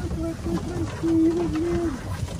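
A person's voice humming without words: a few short notes, then one longer held note near the end.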